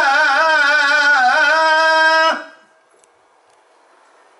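A man singing unaccompanied into a microphone in Turkish religious style: one long held note with wavering, melismatic ornaments, which stops abruptly a little over two seconds in, leaving a faint room hush.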